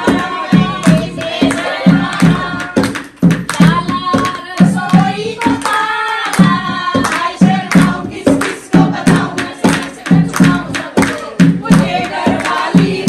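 Group of women singing a folk song together, with a dholak drum beating a steady rhythm and hands clapping along.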